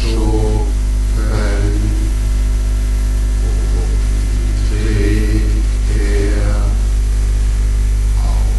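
A loud, steady low hum, with a man's voice making several short pitched vocal sounds over it, about one every second or two.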